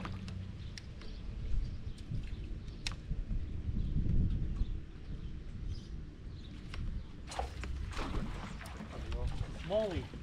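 Steady wind rumbling on the microphone on an open boat deck, with a few sharp clicks of fishing tackle. Near the end there is a short grunt-like vocal sound as a fish is hooked.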